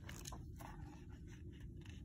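A picture-book page being turned by hand: a faint paper rustle with a few soft crinkles.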